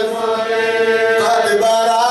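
A man chanting a Shia Muharram lament in Arabic, holding one long mournful note that moves to a new pitch about a second in.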